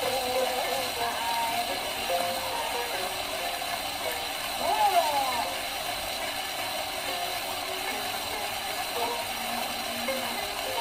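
An early 78 rpm shellac record of gidayu playing on a gramophone: long held, wavering chanted vocal lines with shamisen, over constant surface hiss and crackle. A sweeping vocal glide rises and falls about five seconds in.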